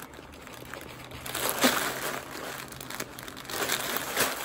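Clear plastic packaging wrapped around a folded hooded blanket crinkling as it is handled, quieter at first and louder from about a second in.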